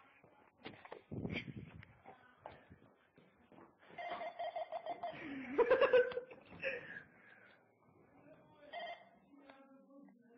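Muffled voices and a laugh with camera handling noise and a thump about a second in. A pulsing electronic ringing tone sounds from about four seconds in and briefly again near the end.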